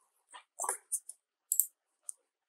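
A few faint, separate clicks from a computer keyboard and mouse, with one brief softer sound about half a second in.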